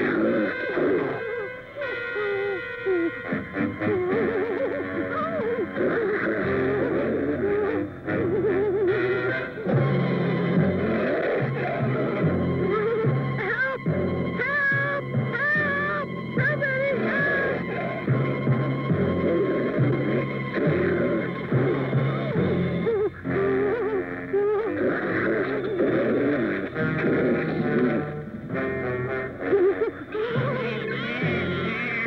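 Cartoon soundtrack music playing under the action, with a low repeating bass figure that starts about six seconds in.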